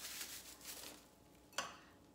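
Plastic wrap crinkling as it is crumpled in the hands, dying away after about a second, then a single short tap.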